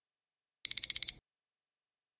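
Countdown timer's alarm sound effect: four quick, high-pitched electronic beeps lasting about half a second, signalling that time is up.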